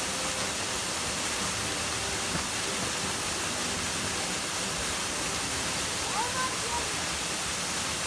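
Steady, even rush of a small waterfall plunging into a pool. A brief faint high chirp about six seconds in.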